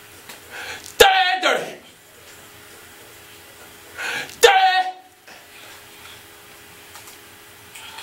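A man's voice: two short shouted vocal ad-libs into a studio microphone, about a second in and again about three seconds later, each starting sharply and falling in pitch.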